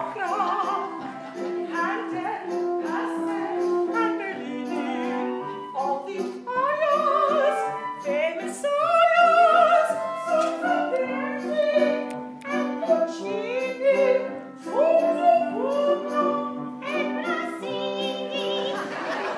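A woman singing an operatic aria with vibrato, accompanied by an orchestra with strings.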